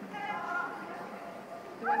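A single high, drawn-out voiced call lasting about a second, with a voice starting up loudly near the end.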